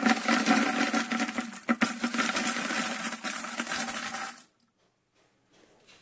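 Brass pistol cartridge cases are poured from a plastic cup into the plastic drum of a case-cleaning tumbler: a dense metallic clinking and rattling that stops suddenly about four and a half seconds in.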